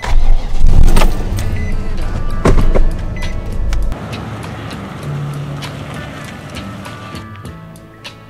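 Nissan Titan pickup's engine being started and running, loud for the first few seconds and quieter after about four seconds, under background music.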